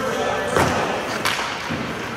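Two sharp knocks of a hockey stick on a puck on the ice, about seven-tenths of a second apart, the first louder, echoing in the rink.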